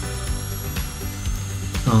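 High-speed air-driven dental handpiece whining at a steady high pitch as a diamond bur cuts a tooth for a crown; the pitch steps up slightly about a second in and drops back near the end. Background music plays underneath.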